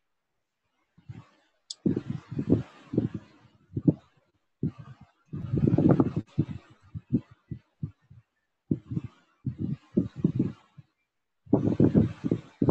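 Indistinct talking: a voice in short broken phrases that the recogniser did not write down.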